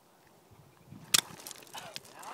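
A golf club strike: one sharp crack about a second in as the club hits the ball off bare, stony ground.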